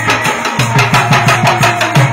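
Instrumental break in traditional Indian folk devotional music: a small hand drum beaten in a quick even rhythm, about six to seven strokes a second, over a steady low drone and a held melody note.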